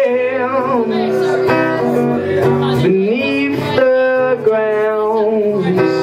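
A man singing with long held, sliding notes over a strummed acoustic guitar, played live.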